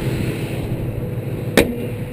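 2000 Ford Mustang GT's 4.6-litre V8 idling, smooth and quiet. A single sharp thump comes about one and a half seconds in.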